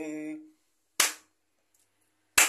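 A man's sung note trails off, then a single sharp hand clap about a second in, one beat of a slow clapped rhythm keeping time with a chant.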